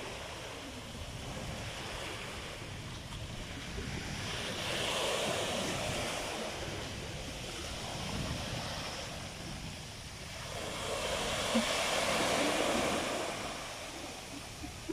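Small sea waves breaking and washing up a beach, swelling twice, about five and twelve seconds in, with a low rumble of wind on the microphone.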